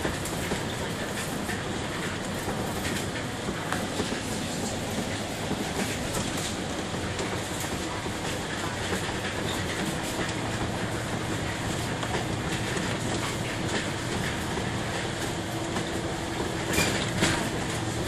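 Inside a moving bus: steady engine and road noise with frequent small rattles and clicks from the bodywork, a low hum settling in about halfway through, and a couple of louder knocks near the end.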